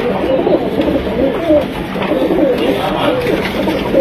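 Domestic pigeons cooing, several calls overlapping without a break.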